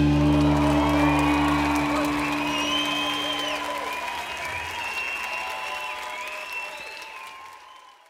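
Audience applauding and cheering while the band's final chord rings out and dies away over the first couple of seconds; the applause then fades steadily away to nothing.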